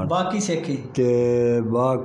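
A man speaking, with one syllable drawn out and held steady for most of a second in the middle.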